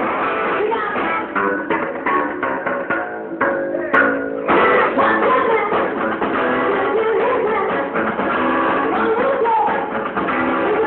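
Rockabilly band playing live: drums, upright bass and electric guitar, with a woman singing. The full band comes in louder about four and a half seconds in.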